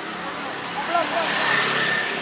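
Street traffic: a motor vehicle's engine passing close, growing louder to a peak about a second and a half in, with a steady high whine joining it.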